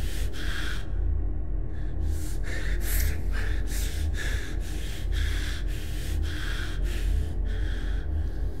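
A man panting hard, out of breath, in quick gasps about two a second, with a short pause about a second in. A low, steady music drone runs underneath.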